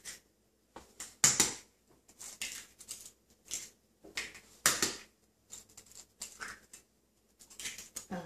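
Eggs being cracked into a small glass bowl: a series of short, sharp cracks and taps of shell, the two loudest about a second in and about four and a half seconds in.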